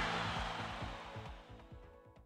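Short music sting for a TV news sports segment: it opens with a loud hit just before and fades away, with fast low pulses under it, dying out near the end.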